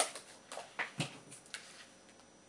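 Paper pages of a document binder being turned and handled: a few short rustles and taps in the first second and a half, the sharpest at the start and about a second in.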